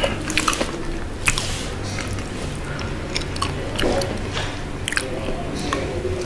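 Close-miked chewing of spicy sauce-glazed boneless fried chicken, with irregular small crunches and clicks as the coated meat is chewed.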